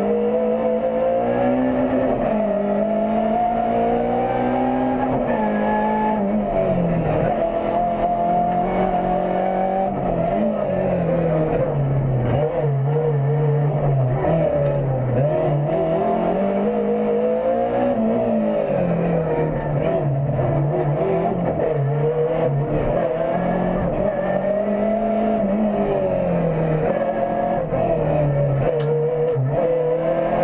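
Renault Clio Sport rally car's four-cylinder engine, heard from inside the cabin and driven hard on a stage: the revs climb and drop every few seconds through gear changes and corners.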